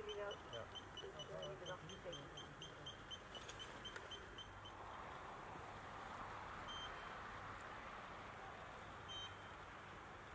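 Portable gas detector beeping rapidly, about four short high beeps a second: its alarm at a leaking gas connection. The beeping stops about halfway through, leaving a faint steady hiss with two lone beeps later on.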